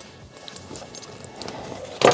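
Faint handling noise of a bag's shoulder strap and its metal clip: soft rustling with a few light clicks as the strap is handled and laid on a wooden table.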